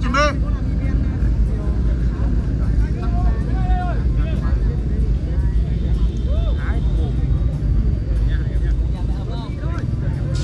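Steady low drone of flute kites (diều sáo) sounding in the wind overhead, with wind rumbling on the microphone. Faint distant voices come and go.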